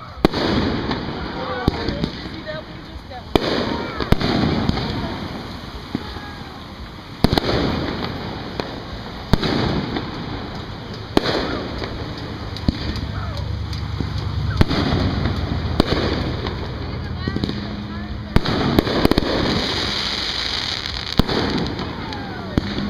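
Aerial fireworks shells bursting overhead: sharp bangs every second or two, each trailing off as it fades, with several coming close together near the end.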